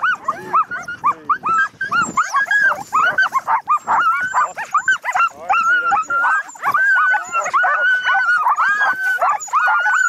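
A team of sled dogs in harness barking and yelping all together, many voices overlapping in a steady din of short high calls. It is the eager racket a sled team makes when it is halted and wants to run.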